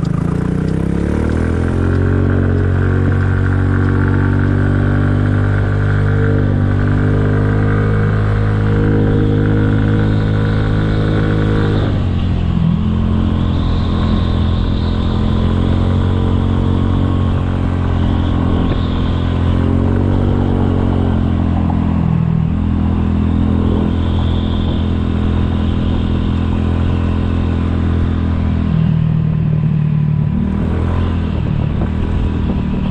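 2007 Kymco 250cc scooter's single-cylinder four-stroke engine running under way. The pitch climbs over the first couple of seconds and holds steady, drops sharply about twelve seconds in as the throttle eases, then settles again with brief dips later on.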